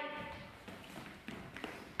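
Faint footsteps and a few soft taps on a wooden gym floor as two sparring fencers move in guard.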